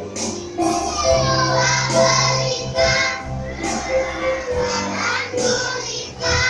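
A group of young children singing together in Indonesian over instrumental backing music with a steady bass line.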